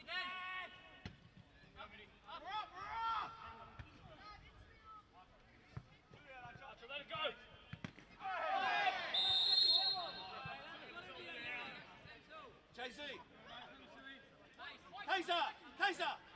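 Footballers shouting to one another across an open pitch, with several voices calling together about eight seconds in. A short, shrill referee's whistle blast sounds amid them.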